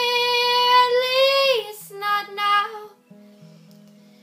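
A woman sings a long held note, then a few short notes, over a strummed acoustic guitar. For about the last second the guitar plays on alone, more softly.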